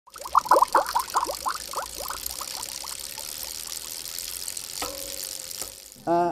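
Logo-animation sound effect: a quick run of bubbly water blips that thin out and fade over about two and a half seconds, over a steady hiss. A click and a short low tone come near the end.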